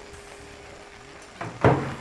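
Quiet studio room tone with a faint steady hum, then a voice starts up near the end.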